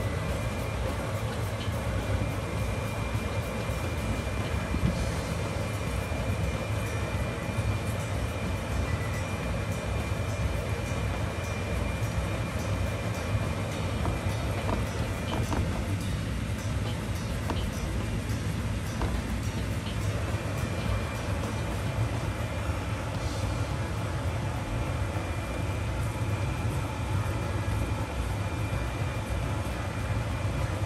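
A steady low hum and rumble, unchanging throughout, with a thin steady whine above it and a few faint clicks.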